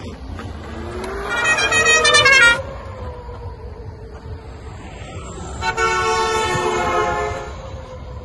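Electric unicycle passing close, its motor whining in a pitched tone that rises and then drops as it goes by. A second horn-like tone is held for about a second and a half near the end.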